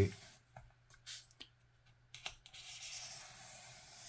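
Wooden toothpick scratching along a scored line in foam board, pressing the edges down. A few light ticks, then a steady scraping from about halfway through.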